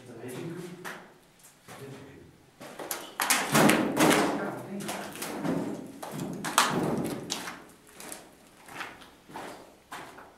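Indistinct low voices mixed with several knocks and thumps, loudest around the middle.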